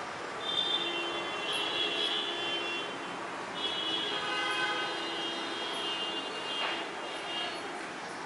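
Road traffic with vehicle horns sounding several times, long blasts of a second or two that overlap one another.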